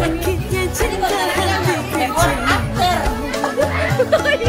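Music with a singing voice and a steady bass beat, mixed with many people talking at once.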